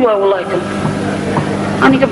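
A voice speaking from the stage, with a drawn-out word falling in pitch at the start. Under it runs a steady low electrical hum and hiss from the old recording.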